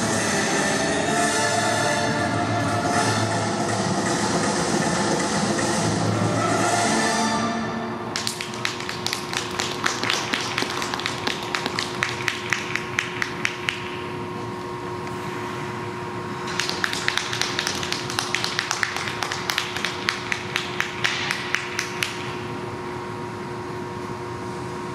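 Figure-skating program music playing, cutting off sharply about eight seconds in. Then scattered hand clapping from a small audience in two spells, over a faint steady hum.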